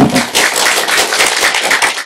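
Audience applauding: many hands clapping densely and steadily, cut off suddenly at the end.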